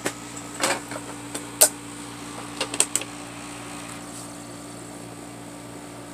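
Handling clicks and knocks from an Insignia portable DVD player as a disc is loaded: a sharp click about a second and a half in, then a quick run of clicks around three seconds. A low steady hum continues underneath.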